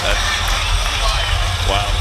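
Arena crowd din: many indistinct voices over a steady low rumble, just after a round of a professional arm-wrestling match ends.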